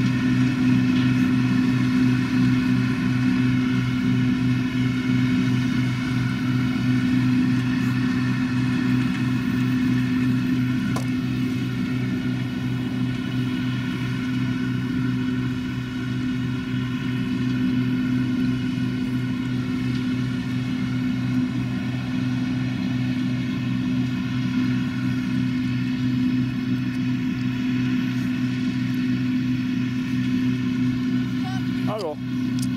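Claas Dominator combine harvester, converted for pumpkin threshing, running steadily as it works through the field: a loud, even engine and threshing drone with a strong low hum.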